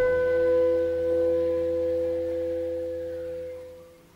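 Clarinet quartet of two clarinets, alto clarinet and bass clarinet holding a long sustained chord, which fades away near the end into silence.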